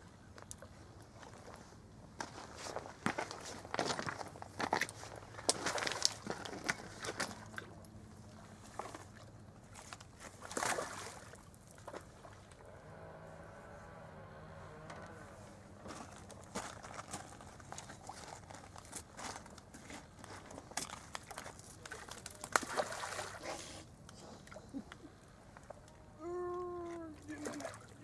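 Footsteps crunching and shifting on a stony gravel riverbank, in irregular bursts of sharp crunches, while a hooked fish is played and netted. A faint distant voice comes through briefly about halfway.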